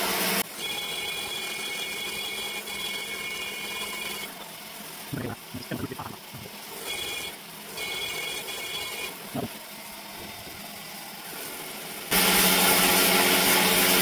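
Die grinder with a carbide porting burr cutting the aluminium port of an RB26 cylinder head, a steady high whine in two stretches with a few short clunks between them. A louder, even noise starts near the end.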